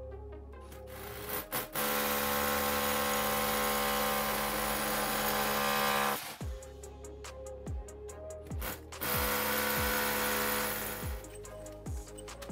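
Cordless drill boring into a brick wall in two runs, a long one of about four seconds starting near the beginning and a shorter one of about two seconds later on, with background music and a beat underneath.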